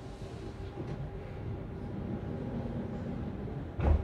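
Exhibition-hall background noise: a steady murmur with a faint hum, and a single thump near the end.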